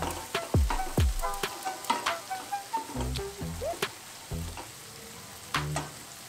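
Spatula stirring and scraping potatoes and capsicum frying in a stainless steel kadai, with repeated irregular scrapes and knocks against the pan over the food's sizzle.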